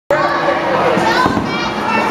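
Many children's voices chattering and calling out in a gym, with a low thump or two near the middle.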